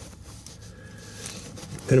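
Faint handling noises of a nylon wire tie being threaded by hand around a cigarette lighter plug, over low background noise.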